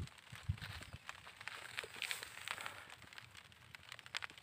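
Faint, irregular rustling and crackling of chili plant leaves and silver plastic mulch film as someone moves through the bed, with a soft thump about half a second in.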